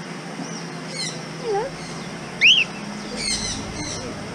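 Cockatiel and other aviary birds calling: a quick run of high chirps about a second in, one loud rising-and-falling whistle halfway through, and another burst of high chirps near the end.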